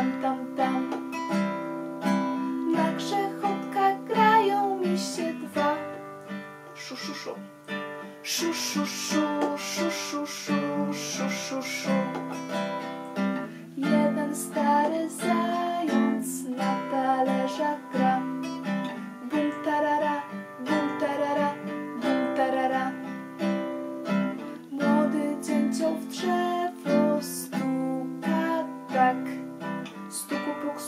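Classical acoustic guitar strummed in a steady rhythm, with a woman singing the melody along with it without words.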